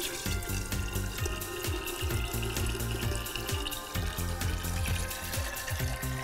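Pineapple juice pouring from a can in a steady stream into a glass pitcher of liquid, a continuous splashing fill, with background music playing underneath.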